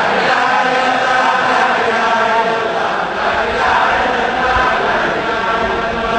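A group of men chanting dhikr together in unison, many voices blended into one steady, continuous chant.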